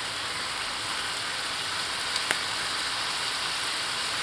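Chicken in a red-wine gravy sizzling steadily in a wok on high heat as the gravy thickens, with a light click a little over two seconds in.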